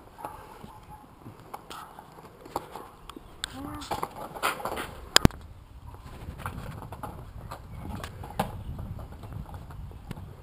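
Inline skate wheels rattling and knocking over brick paving stones, with scattered clacks. A sharp, loud impact comes about five seconds in as the skater goes down onto his hands and skates on the pavers.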